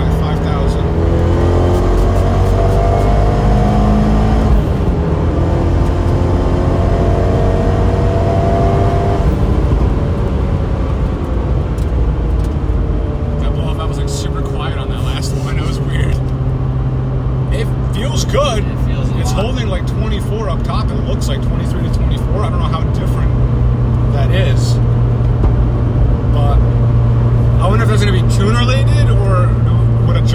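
Fiat 124 Spider Abarth's 1.4 MultiAir turbo four-cylinder, fitted with a larger turbo on its old tune, pulling hard under boost from inside the cabin: the engine note rises, drops at a gear change about four seconds in, climbs again, then falls as the driver lifts off about nine seconds in and settles to steady low running.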